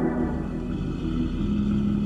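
Sound effect of a car engine running steadily, a low rumble with a hum. The tail of an organ music bridge fades out under it near the start.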